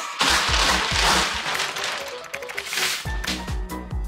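Background music with a steady beat starts. Over the first three seconds a loud, crackling rustle of a large paper tablecloth sheet being unfolded and shaken out sits on top of it, then fades, leaving the music alone.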